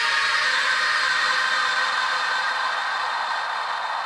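Intro of an electronic wave track: a wash of white noise over held synth chord tones, with no bass or drums. The noise thins a little toward the end.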